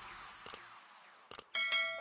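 The reverberant tail of an electronic intro jingle fading out, with a few faint clicks. About one and a half seconds in, a short bell-like chime rings with several steady tones.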